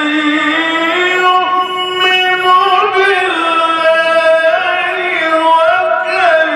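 A man reciting the Quran in melodic tajweed style, holding long notes with ornamented turns and glides in pitch.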